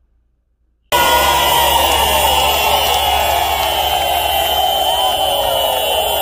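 Crowd cheering and whooping, with many voices rising and falling in pitch. It starts suddenly after about a second of near silence, and a steady high tone runs underneath.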